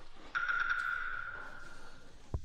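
A single high ringing tone that starts sharply about a third of a second in and is held, slowly fading: an added ping-like sound-effect sting.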